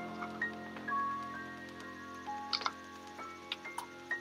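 Quiet suspense film score: a low held drone under sparse, high single notes that shift pitch every second or so, with a few faint ticks in the second half.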